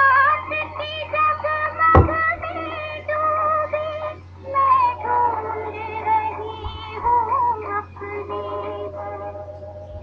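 Bollywood film song playing, a female singer holding long, slightly wavering notes over the accompaniment. A single sharp knock cuts in about two seconds in.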